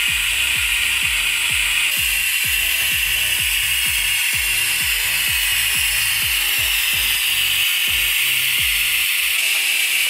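Pneumatic vacuum brake bleeder hissing steadily on compressed air as it draws old brake fluid out through the open rear bleed screw. Background music with a steady beat plays underneath and stops shortly before the end.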